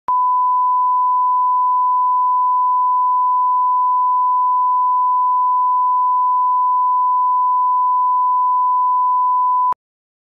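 Steady single-pitch 1 kHz line-up test tone of the kind played with television colour bars, starting and stopping with a click. It cuts off suddenly a little before the end.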